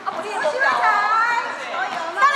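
Several people chattering at once, overlapping voices with a raised, lively voice standing out about a second in.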